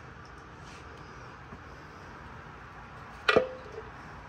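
One sharp metallic clink with a brief ring about three seconds in, from the cover being pried off the engine, over a faint steady room background.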